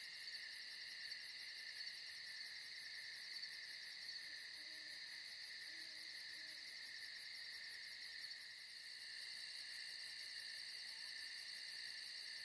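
Faint night insect chorus: crickets chirring steadily, with a fast, even pulsing high trill over them. A few faint low calls sound midway.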